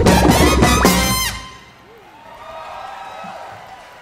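Live funk band with a horn section, a trumpet out front, playing loudly up to a final hit that ends about a second in. The crowd then cheers and claps, much quieter.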